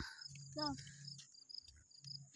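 Crickets chirping in an even rhythm, about four high chirps a second.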